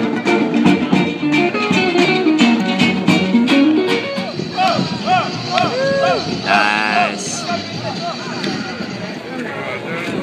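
Street band playing acoustic guitars with regular strummed chords and a hand drum. About four seconds in, the music gives way to different sounds: short tones that rise and fall.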